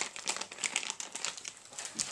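Plastic soft-bait packaging crinkling as it is handled, an irregular run of small crackles.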